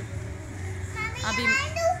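Speech only: a woman talking and a young child's high voice, over a low steady background hum.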